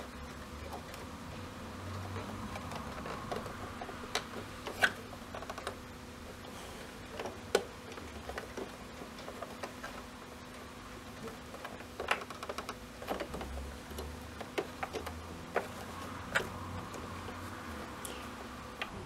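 Hands working fabric out from under a sewing machine's hemmer foot, with irregular light clicks and taps from the fabric and machine parts over a low background.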